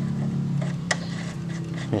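A few sharp metallic clicks as a motorcycle front axle is pushed through the wheel hub and fork, with a steady low hum underneath that slowly fades.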